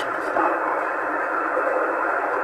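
Steady hiss of an HF transceiver's receiver in upper sideband on 27.555 MHz, the narrow, thin-sounding noise of the SSB filter, with no station coming through on the frequency.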